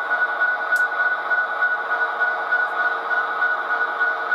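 Sound decoder of an HO-scale SD70ACe model locomotive playing a diesel engine idling through its small on-board speaker: a steady hum with a constant high whine on top.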